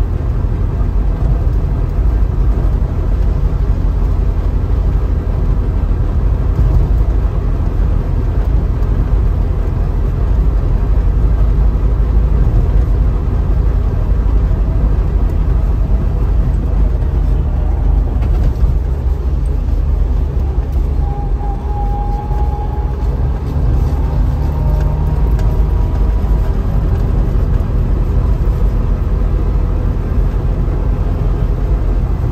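Trabant 601's two-stroke twin-cylinder engine running steadily as the car drives along, heard from inside the cabin together with road noise.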